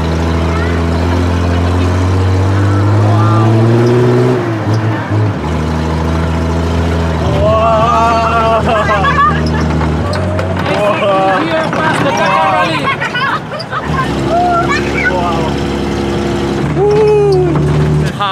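Off-road jeep engine working hard while driving over sand dunes, its pitch rising and falling several times with the changing load and speed. Voices call out over it.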